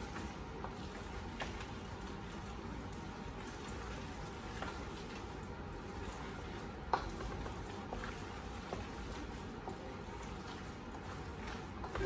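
A spoon stirring a thick, wet chicken, rice and cheese casserole mixture in a stainless steel mixing bowl, with a few light clicks of the spoon against the bowl, the clearest about seven seconds in.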